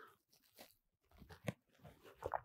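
A man drinking from a ceramic mug: a few faint sipping and swallowing clicks, the clearest about one and a half seconds in, otherwise near silence.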